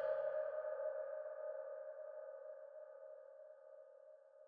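A single held synthesizer tone fading slowly away after the psytrance track's beat has stopped: the last note of the track dying out.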